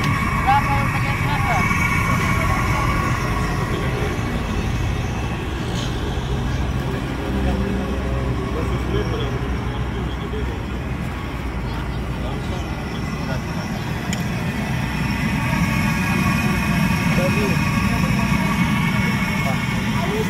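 Busy roadside street ambience: a steady traffic rumble with indistinct voices of people around a food stall. Steady high-pitched tones sound over it, fading after about two seconds and returning near the end.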